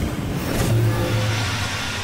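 Channel logo intro sting: an engine-like vehicle sound effect layered with music, holding steady at a low pitch.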